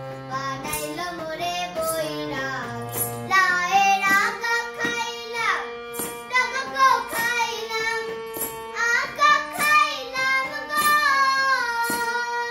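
A child singing a Bengali folk song with harmonium accompaniment, the voice rising and falling over steady held harmonium notes.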